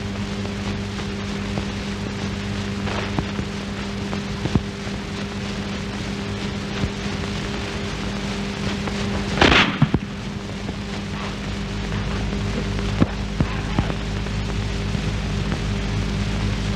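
A single rifle shot about nine and a half seconds in, over the steady hiss and hum of an old film soundtrack with faint crackle.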